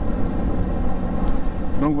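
Triumph three-cylinder motorcycle engine running steadily while cruising, heard from the rider's seat with wind rushing over the microphone.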